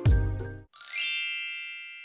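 The background music cuts out with a short low falling sound. Then a bright, sparkling chime sound effect rings out and fades over about a second.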